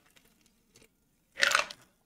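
A man drinking from a bottle: quiet swallowing, then one short breathy mouth sound about one and a half seconds in as he lowers the bottle.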